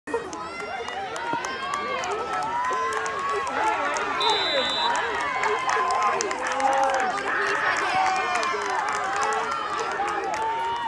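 Many overlapping voices of players and spectators talking and calling out along a football sideline, with scattered sharp claps and clacks. A short, high, steady whistle tone sounds about four seconds in.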